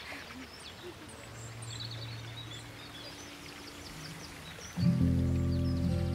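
Faint bird chirps, short high calls, over quiet garden ambience. About five seconds in, background music enters suddenly and much louder with held, sustained low chords.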